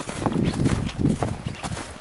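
Footsteps walking through snow, a run of soft irregular steps.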